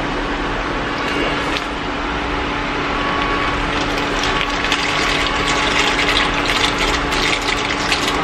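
Dry elbow macaroni poured from a plastic bag into a pot of boiling water. Under the steady bubbling of the water, a dense run of small clicks and splashes from the falling pasta and the crinkling bag starts about three and a half seconds in.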